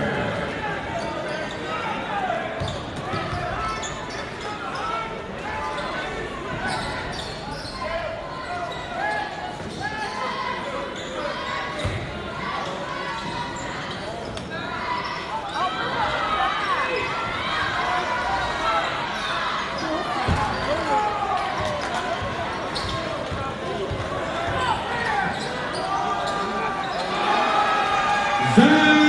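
A basketball bouncing and thudding on a hardwood gym floor during live play, over a steady bed of spectator chatter and shouts, echoing in a large gym.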